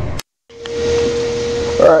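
A click and a moment of dead silence where one recording is spliced onto another, then a steady whirring hum with a single steady tone running under it.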